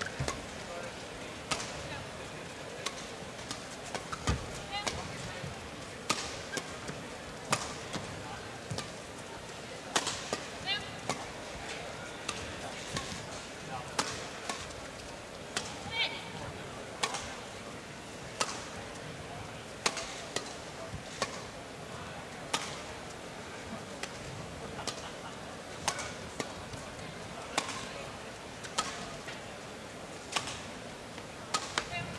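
Badminton rackets striking the shuttlecock in a long doubles rally: a sharp crack roughly every second and a half over a steady background of arena crowd noise, with a few brief squeaks from shoes on the court.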